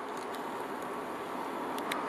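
Steady road traffic noise, an even hiss with no single vehicle standing out.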